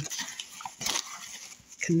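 Paper crinkling and rustling as hands open the inner paper liner of a tea box, in irregular crackles with one louder crackle about a second in.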